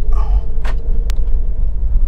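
Low, steady rumble of a car being driven slowly, heard from inside the cabin, with a couple of faint clicks. The suspension is being checked and makes no knocking: it sounds normal.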